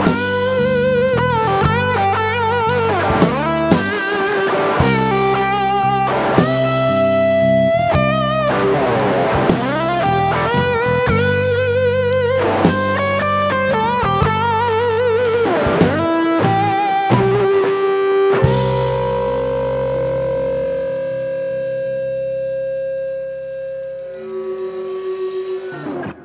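Electric guitar solo on a Gibson ES-335 semi-hollow body: bent, wavering lead notes over bass and drum kit in a blues-rock groove. About eighteen seconds in the band lands on a held chord that rings out, with a fluttering repeated note near the end before it stops.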